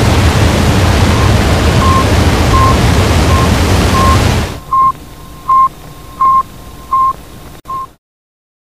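A NASA sound clip played back through a homemade Arduino and old-MP3-player sound box: a loud, steady rushing noise with a short beep of one pitch about every three-quarters of a second. About four and a half seconds in, the noise stops and the beeps go on louder, five more, before the sound cuts off near the end.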